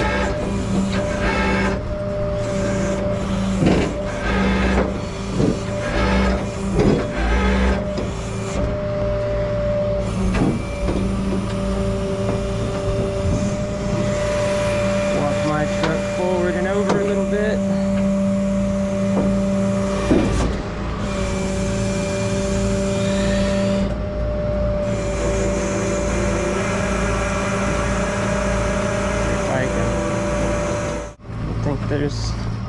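Rollback tow truck's diesel engine running steadily to drive the bed's hydraulic winch, giving a constant hum, while a wrecked GMC Yukon is winched up the tilted bed with metal knocks and clanks, most of them in the first eight seconds.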